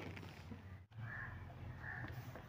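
Faint bird calls in the background, two short calls in the second half, over a low steady room hum; the sound drops out briefly just before the calls, about a second in.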